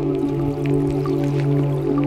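Ambient music from a Eurorack modular synthesizer: a steady low drone chord held under scattered short, droplet-like plinks.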